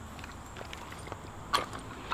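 Quiet pause with a few faint clicks about a second and a half in, from handling a freshly loaded 12-gauge pump-action firearm.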